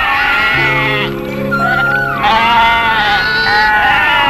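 Sheep bleating over background film music with sustained low notes.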